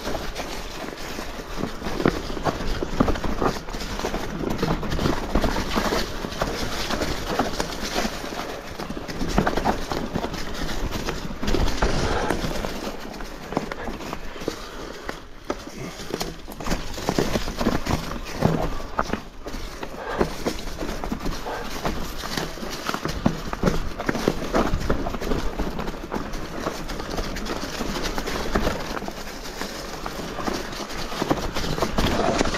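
Mountain bike clattering over a rough trail: a dense, irregular run of knocks and rattles from tyres, chain and frame hitting rocks and roots.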